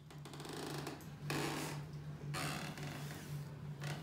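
A fingertip scraping through a tray of dry coloured sand as it traces letters: soft scratchy rustles in several strokes with short pauses between them, over a steady low hum.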